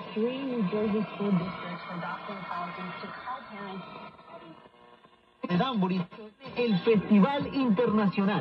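A vintage vacuum-tube radio plays an AM broadcast: an announcer talks through the set's speaker, and the sound is thin, with no treble. The voice breaks off briefly a little past the middle, then carries on.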